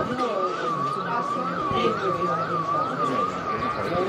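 A siren sounding in a fast yelp, its pitch rising and falling about twice a second, with voices talking underneath.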